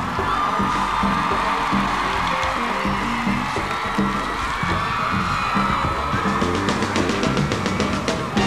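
Live pop-rock band music with a steady beat, with an audience screaming and cheering over it.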